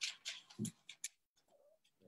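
A few faint, short, irregular clicks and paper rustles in the first second, from the pages of a Bible being leafed through.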